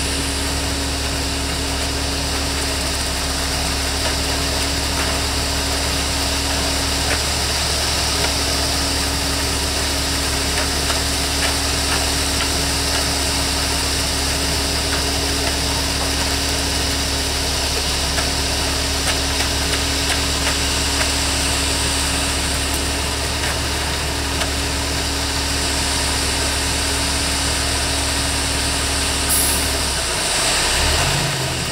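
Concrete mixer truck's diesel engine running at a steady speed while the drum turns and concrete discharges down the chute, with a few faint ticks over the drone.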